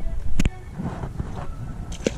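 Low wind rumble on the microphone, with one sharp knock a little under half a second in.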